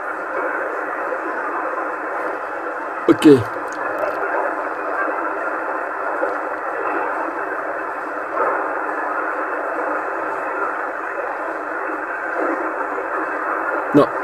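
27 MHz CB band received in upper sideband through a transceiver's speaker: a steady, narrow-band rush of static, cut off sharply above and below by the receiver's filter. A brief voice fragment comes through about three seconds in, from weak long-distance stations under the noise.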